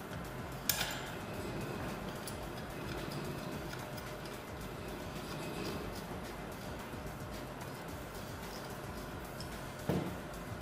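Handling sounds of a circulating pump being fitted to copper heating pipe with hand tools: a sharp metallic click about a second in, faint ticks, and a short knock near the end, over a steady low background.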